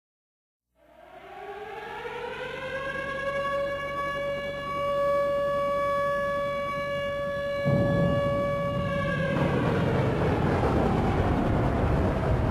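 A single siren-like tone glides up in pitch, holds steady for several seconds, then fades out. A loud, even rushing noise starts about two-thirds of the way in and carries on.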